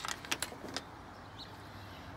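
A few quick clicks and rustles of handling in the engine bay in the first second, then a steady faint low hum.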